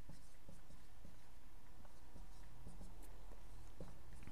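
Dry-erase marker writing on a whiteboard: faint strokes and light taps of the tip against the board, over steady room noise.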